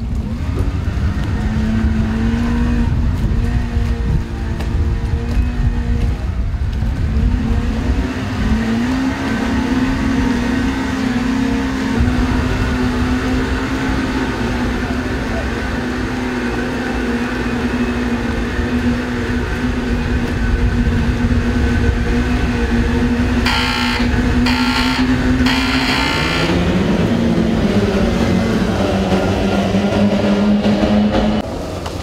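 Racing-boat outboard motors running at the pit, a steady hum whose pitch drifts up a little, over a heavy low rumble. Three short, higher bursts come about 24 seconds in, then the engine note drops and climbs again.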